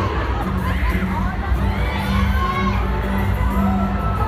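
A large arena crowd of fans screaming and cheering, many high voices overlapping and sliding up and down in pitch.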